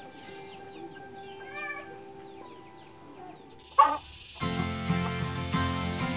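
Soft held music tones with a faint short animal call partway through, then a louder brief animal call about four seconds in. Fuller music, plucked or strummed, comes in right after the louder call.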